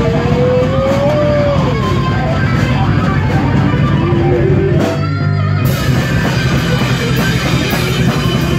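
A live heavy rock band playing loud electric guitar, bass and drums through amplifiers. A note slides up and back down in the first two seconds, and the top end drops out briefly about five seconds in.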